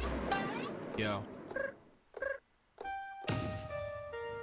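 Trap samples from BandLab's Underground Trap Creator Kit, fired from MIDI drum pads one after another. A quick rising sweep comes first, then short vocal-like stabs and a brief gap. A held synth line with stepping notes enters about three seconds in.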